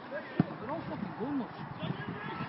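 A football kicked hard once: a single sharp thump about half a second in, with distant voices calling out around it.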